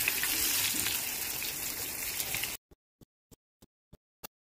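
A skewered row of small floured fish frying in hot oil in a pan, with a steady sizzle. The sizzle cuts off suddenly about two and a half seconds in.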